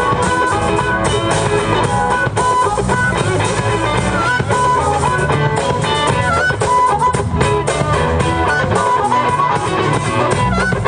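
Live hill country blues band: amplified harmonica playing held, bending notes over electric guitar and drums.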